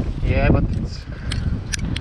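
Footsteps on steel grating stair treads, with a few sharp taps in the second half, over a steady low wind rumble on the microphone. A brief voice sound comes about half a second in.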